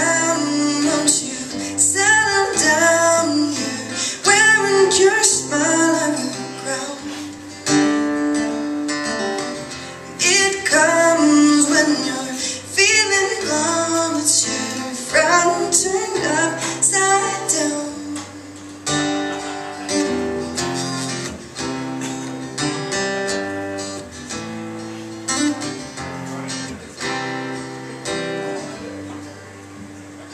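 A woman singing live to her own acoustic guitar. After about eighteen seconds the voice drops out and the guitar plays on alone, a little quieter.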